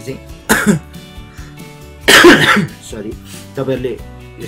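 A person coughs or clears their throat twice, briefly about half a second in and louder about two seconds in, over background music.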